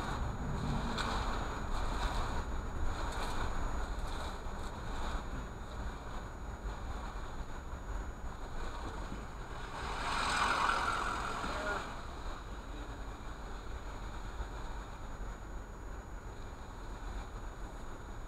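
Steady low rumble of a car's engine and tyres heard from inside the cabin as it creeps along in slow traffic, with a louder rushing swell about ten seconds in.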